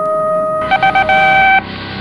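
Electronic tones: a steady pure tone held through the first half, then a buzzier beeping tone that pulses a few times, holds, and cuts off suddenly shortly before the end.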